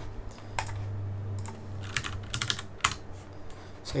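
Computer keyboard being typed on: scattered keystrokes, with a quick run of several about halfway through, over a low steady hum.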